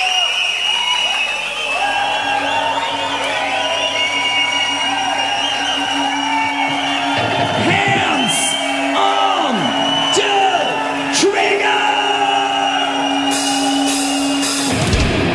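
Opening of a live heavy metal recording: a crowd cheering and shouting over a long held note, with cymbals coming in near the end as the band starts.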